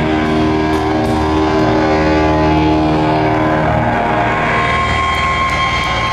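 Live rock band with distorted electric guitars and bass holding long, ringing chords. A steady high tone comes in over them near the end.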